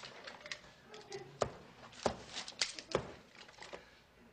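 About four sharp knocks and thumps in the middle seconds, with faint low voices in the first second.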